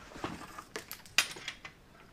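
Light metal clicks and rattles from a folding steel-wire hand cart as its base platform is folded down, with one sharp click a little over a second in.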